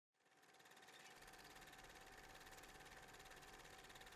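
Near silence: a faint steady hiss with a thin steady tone underneath, fading in over the first second.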